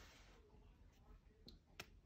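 Near silence, with two faint clicks near the end from fingers handling a paper sticky-note pad.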